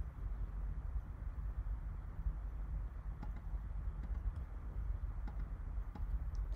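A few faint computer-mouse clicks over a steady low room hum, as stitches are placed in the embroidery software.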